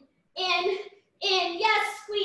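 A woman's high, sing-song voice calling short rhythmic workout cues, three in quick succession, about one a second.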